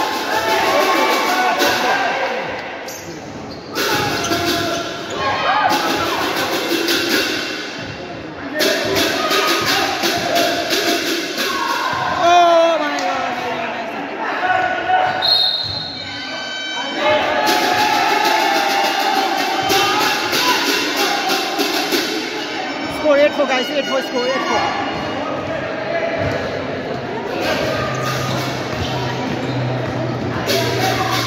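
A basketball bouncing and being dribbled on a hard indoor court during play, with players and spectators shouting in a large hall.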